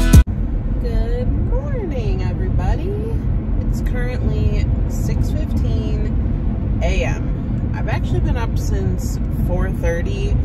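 Steady road and engine rumble inside the cabin of a moving car, under a woman talking.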